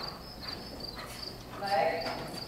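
Crickets chirping in a fast, steady, regular pulse over the soft hoofbeats of a cantering horse on arena footing. A short, louder pitched sound comes near the end.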